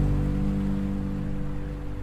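Relaxing acoustic guitar music: a held chord rings and slowly fades, over a steady wash of ocean surf.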